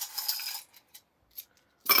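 Loose coins, pennies among them, clinking and rattling as they are handled: a jingle at the start, a few small clicks, then a louder rattle near the end.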